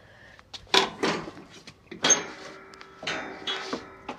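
Several irregular knocks and clatters with rustling between them, the sound of handling things up close.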